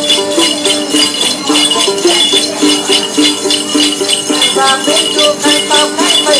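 Instrumental Then music: a đàn tính, the Tày long-necked gourd lute, plucking a repeating melody over the steady shaken rhythm of a chùm xóc nhạc bell cluster.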